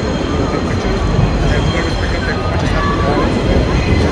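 City street noise at a busy scene: a loud, steady low rumble of traffic or engines, with people talking in the background.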